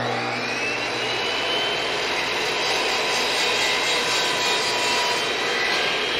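DeWalt compound miter saw running, its whine rising in pitch over the first second as the motor comes up to speed. It then runs steadily as the blade cuts through the end of a laminated curved wooden rail.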